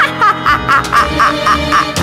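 A spooky cartoon-style cackling laugh, a quick run of about eight short 'ha' bursts, over the backing music of a children's Halloween song.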